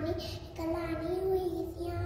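A young boy singing a Sindhi nursery rhyme solo and unaccompanied, holding long notes in a sing-song voice, with a short break about halfway.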